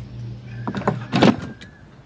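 A few knocks and a clatter of loose wooden floorboards being lifted and moved, the loudest about a second in.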